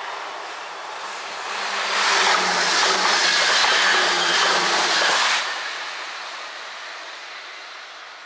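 NS Sprinter electric train passing at speed: the rush of wheels on rail builds over a second or two, stays loud for about three seconds, then drops off suddenly as the last car goes by and fades away.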